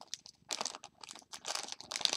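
Clear plastic magazine bag crinkling as it is slit and pulled open by hand, a rapid, uneven run of crackles.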